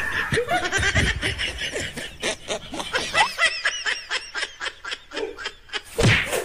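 Laughter in quick, repeated, high-pitched bursts throughout.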